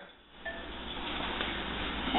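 Faint, steady sizzle of ground turkey, onions and peppers browning in a skillet on the stove.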